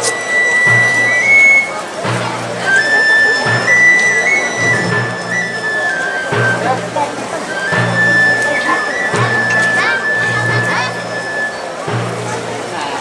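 Processional band playing a slow Guatemalan funeral march (marcha fúnebre): long held high melody notes step up and down in pitch over a slow, steady low beat, with crowd voices mixed in.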